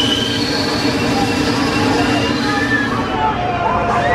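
S&S Screamin' Swing pendulum ride in operation: a steady, loud mechanical drone with thin high whines from the air-driven swing arms, with riders' voices over it.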